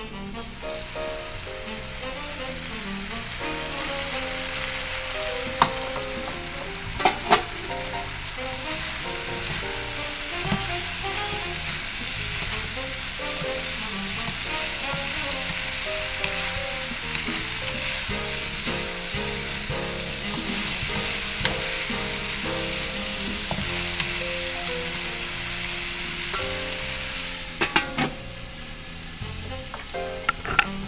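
Sliced meat and vegetables sizzling steadily as they are stir-fried in a steel wok, a wooden spatula scraping and tossing them. A few sharp knocks stand out, a pair about a quarter of the way in and a pair near the end.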